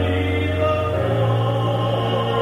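Gospel music: voices sing sustained chords over a held bass accompaniment, and the bass note changes about a second in.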